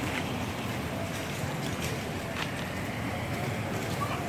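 Steady outdoor street background noise, an even hiss with a few faint clicks and no distinct event.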